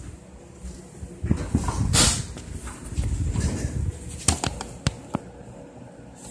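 Handling noise from a handheld camera being moved and repositioned: irregular bumping and rustling, then a few sharp clicks or taps about four seconds in.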